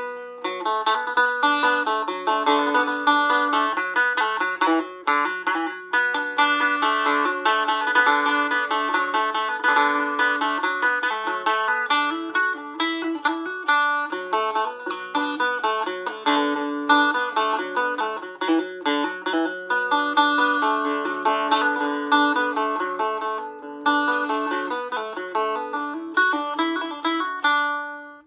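Stick dulcimer picked with a plectrum close to the bridge for a bright, tenor-banjo-like tone, playing a quick traditional melody over a steady drone note.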